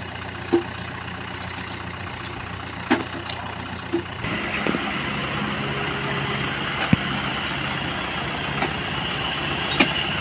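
Kubota tractor's diesel engine running steadily, growing louder about four seconds in, with a few sharp knocks over it.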